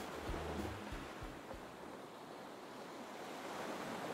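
Ocean waves sound effect: a steady wash of surf, with the low notes of background music dying away in the first second and a half.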